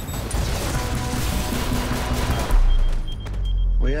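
Action-trailer sound mix: music under a dense crackle of rapid gunfire for the first two seconds or so, then a heavy low boom about halfway through that rumbles on. A fast, high beeping comes in near the end.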